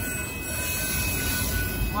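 Union Pacific autorack freight cars rolling past: a steady rumble and rattle of wheels on rail, with a thin steady high-pitched squeal.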